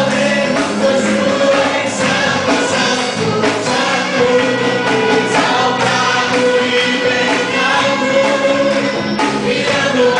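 Live gospel worship band: a male lead singer and a group of singers singing together over electric bass, electric guitar, drum kit and keyboard, with steady drum hits under the voices.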